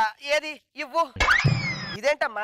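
Cartoon-style comedy sound effect, a boing: a sudden low thump with a tone that sweeps up steeply and then slides down in pitch, lasting most of the last second.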